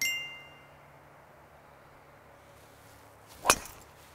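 A short bright chime rings at the start and fades within about half a second. About three and a half seconds in, a driver strikes a golf ball off the tee with one sharp hit.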